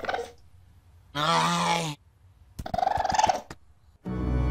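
A cartoon raccoon's voiced animal sounds. There are three calls: a short one at the start, a steady held call about a second in that lasts nearly a second, and a rougher, pulsing call near the end.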